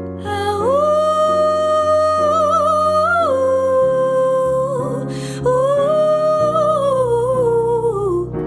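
A woman singing long held notes with vibrato over digital piano chords: one sustained phrase, a quick breath about five seconds in, then a second held phrase that slides down at the end.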